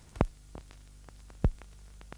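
Steady low electrical hum with two loud pops about a second and a quarter apart and a few fainter ticks: the hum and crackle of an old film soundtrack.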